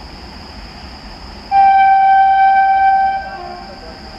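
Horn of a WAP7 electric locomotive on an express passing at speed: one long steady honk starting about a second and a half in and lasting about a second and a half, then tailing off into a softer, lower note.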